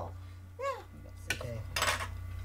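Utensils clinking on dishes: a sharp click a little past a second in and a short scraping rattle near the end, over a low steady hum.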